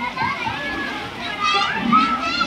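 Many children's voices at play, calling and shouting over one another, rising to louder high-pitched calls about a second and a half in.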